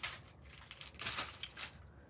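Clear plastic packaging crinkling as it is handled and pressed flat: one short burst right at the start, then a longer run of crinkles about a second in.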